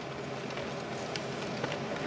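Low, even background hiss of open-air ambience, with no distinct sound in it.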